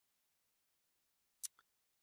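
Near silence broken by one short, sharp click about one and a half seconds in, followed at once by a fainter click.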